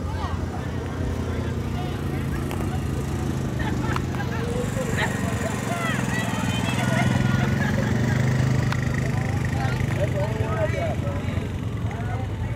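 Indistinct voices of several people talking over the steady low hum of an engine running, which swells a little around the middle.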